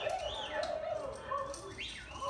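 Film soundtrack playing through a television's speakers: a crowd's voices with a few short, high sliding calls.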